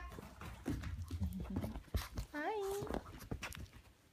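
Rumbling handling noise and scattered clicks from a handheld phone being carried and moved, with one short high call that rises and then holds about two and a half seconds in.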